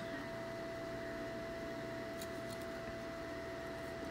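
Steady, low room hum with a faint, thin, steady whine running through it, and a few faint light clicks a little over two seconds in.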